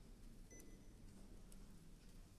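Near silence: concert-hall room tone with a faint low hum, and a brief faint high tone about half a second in.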